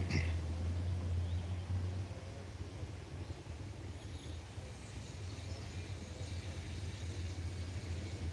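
Low, steady rumble of a vehicle engine running out of sight, dropping a little in level about two seconds in, with a few faint high chirps over it.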